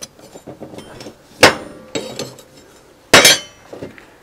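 Steel pieces clanking against a steel welding table: two loud metallic clanks with a ringing tail, about a second and a half in and again near three seconds, between lighter clinks.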